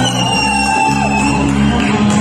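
Live band playing loud amplified music on stage, with a long held high note through the first half.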